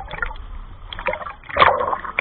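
Sea water sloshing and splashing around a swimmer, close to a microphone held at the waterline, in uneven surges with a louder splash about one and a half seconds in.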